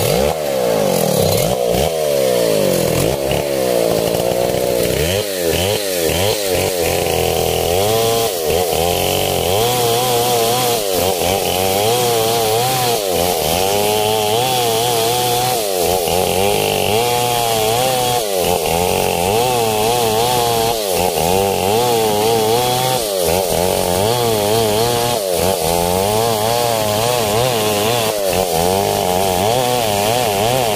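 STIHL 070 two-stroke chainsaw under load, ripping lengthwise along a coconut trunk. The engine runs loud and steady, its pitch wavering up and down as the bar is worked along the cut.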